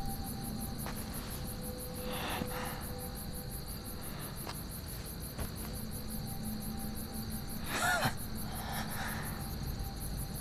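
Crickets chirping in a fast, even pulse over a faint, sustained background music drone, with a brief voice-like sound about eight seconds in.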